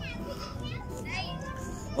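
Children's voices calling and shouting in the background, high-pitched cries that rise and fall several times over a steady low hum.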